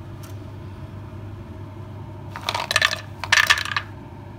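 Raw peanuts poured by hand into a non-stick pan of melted butter, rattling and clattering against the pan in two bursts, about two and a half and three and a half seconds in. A steady low hum runs underneath.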